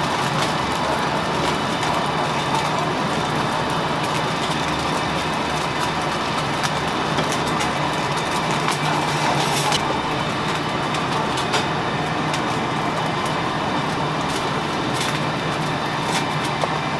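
Steady kitchen noise: a continuous hiss with a low hum, the hot stone pot of chicken and rice sizzling on the burner, and a few light clicks.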